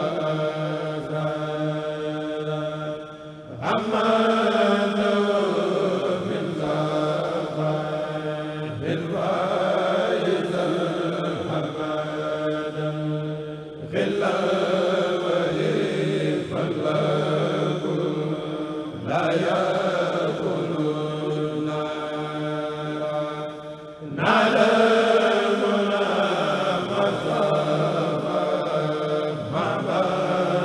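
A group of men chanting a Mouride qasida (khassida) in Arabic, unaccompanied, in long held phrases of about five seconds each with short breaks between.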